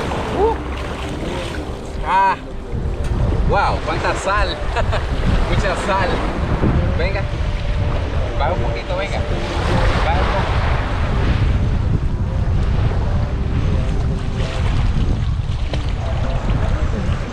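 Sea water sloshing and splashing around a swimmer in shallow surf, with wind buffeting the microphone in a steady low rumble.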